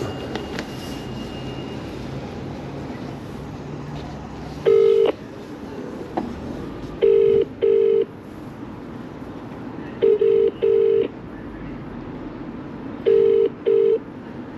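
British phone ringback tone played through a phone's loudspeaker while an outgoing call rings unanswered. It is the double "ring-ring" burst, starting about five seconds in and repeating every three seconds or so, four times.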